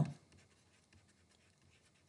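Faint scratching of a stylus writing a word on a pen tablet, made of short strokes.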